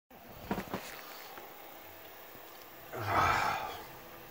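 Two light knocks of a phone being handled about half a second in, then a man's loud sniff lasting under a second about three seconds in.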